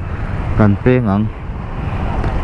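Steady low rumble of a motorcycle engine running at low speed in slow traffic, with surrounding traffic noise; a man's voice speaks briefly about half a second in.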